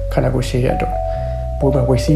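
Background music of held, stepping notes over a steady low drone, with a voice speaking in two short bursts over it.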